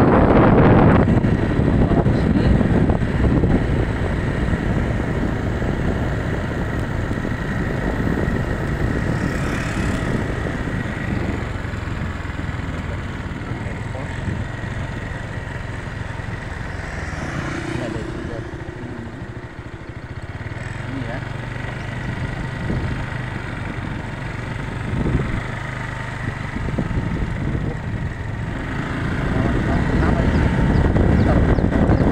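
A motorcycle running steadily along a paved road, with wind and road noise rushing on the microphone and dipping for a moment about two-thirds of the way through.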